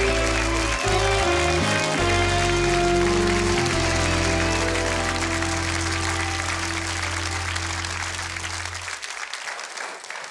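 Studio house band playing a short walk-on tune with quick bass-note changes that settles about two seconds in on one long held chord, over steady studio audience applause. Band and applause fade out together near the end.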